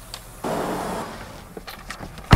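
A car door opening and a person climbing into the driver's seat: a sudden rustling, shuffling burst about half a second in that fades, then a few light clicks near the end.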